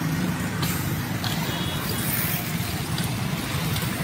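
Street traffic: motorcycle engines running close by as motorbikes pass along the road, over a steady low engine hum.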